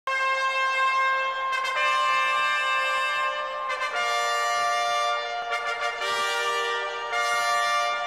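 Brass fanfare of long held chords, moving to a new chord every second or two.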